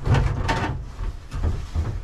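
Fiberglass headliner panel being pried loose from a boat's cabin ceiling with a screwdriver: irregular scraping and knocking as it comes away, with a sharp knock about half a second in.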